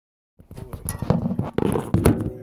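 Handling noise of a phone being set in place on a stand: a rapid, uneven series of knocks, bumps and rubbing against the phone's microphone, starting about half a second in.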